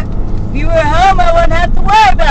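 A high-pitched voice, words unclear, over the steady low drone of a car driving, heard from inside the cabin.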